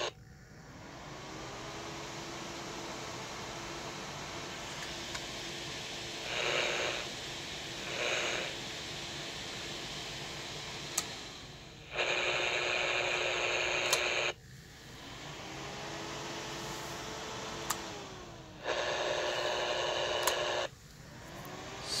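Grundig portable AM radio giving steady static with faint whistles gliding in pitch as it picks up a homemade Tesla coil driver running near 1.25 MHz in the AM band. Twice the static turns into a louder, harsher buzz for about two seconds as the system is switched, and there are a couple of sharp clicks.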